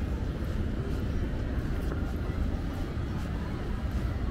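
Steady low rumble of distant city traffic, with faint footsteps ticking about twice a second.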